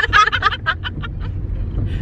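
Two women laughing hard, the laughter breaking into short gasps that fade out about a second in, over a low steady hum inside a car.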